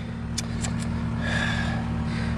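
Skid steer's diesel engine idling steadily while it warms up just after a glow-plug start. Over it come a few light clicks and a short rustle as the nylon ratchet strap is handled.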